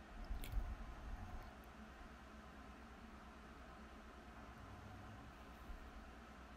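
Faint handling of tabletop decorations: a few soft low thumps and a light click in the first second and a half, then quiet room hum.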